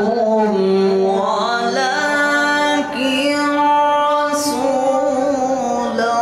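Male qari reciting the Quran in a melodic tajweed style, singing long drawn-out notes that step and glide between pitches, in two phrases with a short break about three seconds in.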